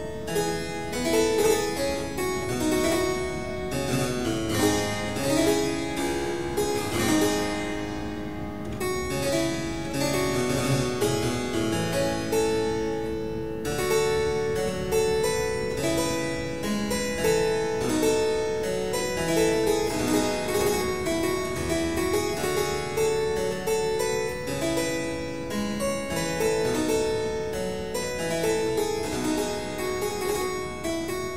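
Harpsichord played solo: a continuous stream of quick plucked notes, several sounding at once.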